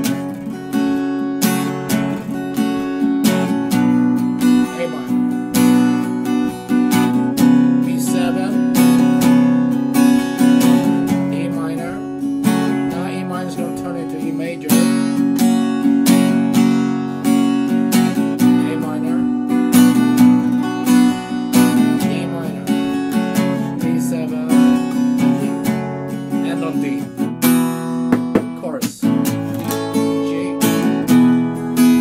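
Acoustic guitar with a capo on the 2nd fret, strummed steadily in a down, down, up, up, down, up pattern. It plays the verse chord progression, starting on an E minor shape.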